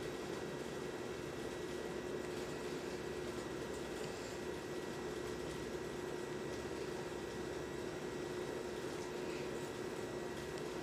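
Steady hiss with a low, even hum, like a room's background or an appliance running; no distinct handling sounds stand out.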